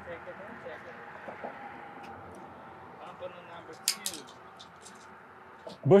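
Steady low background of passing traffic and breeze on the bridge, with faint voices early on and a short cluster of sharp metallic clicks about four seconds in; a man starts talking at the very end.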